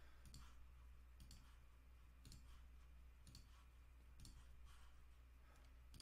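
Near silence with faint computer mouse clicks, roughly one a second, over a low steady hum.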